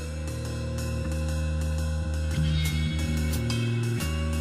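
Instrumental intro of a praise band's contemporary worship rock song: drum kit with hi-hat and cymbal strikes in a steady beat, guitars, and held bass notes that change every second or so. No singing yet.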